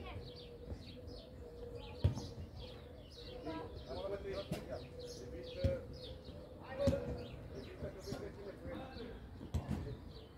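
Football being kicked during a youth match: a few sharp thuds, the loudest about two seconds in and more in the second half, amid voices shouting on the pitch and birds chirping.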